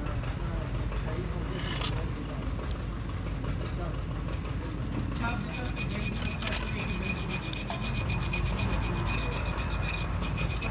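Machinery running with a steady low hum, joined about halfway through by a fast, even rasping rhythm.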